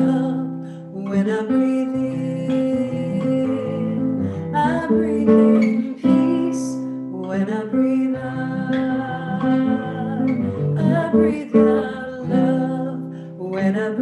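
A woman singing with a nylon-string classical guitar played with the fingers as accompaniment.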